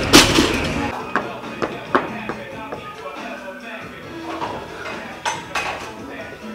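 A loaded barbell with bumper plates hitting the lifting platform with a loud thud, then bouncing in a few smaller knocks over the next two seconds, over background music. Two more sharp knocks come near the end.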